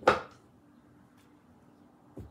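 A single sharp tap on a deck of tarot cards, just after the start, followed by quiet with a faint steady hum.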